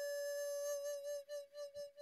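Soundtrack music: a solo flute holds one long, steady note, which then breaks into a few short, softer swells and dies away near the end.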